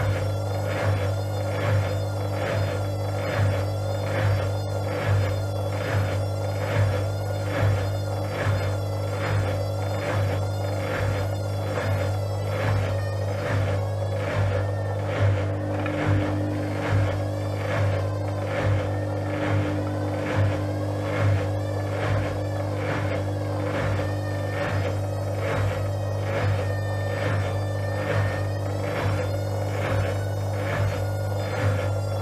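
Gorenje WA72145 front-loading washing machine running, its drum turning the laundry with a steady motor hum and a regular pulse a little more than once a second.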